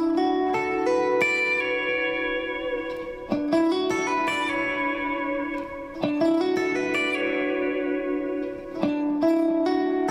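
Electric guitar playing a phrase of single notes that ring on into one another and sustain together. The phrase starts again about every three seconds, four times in all.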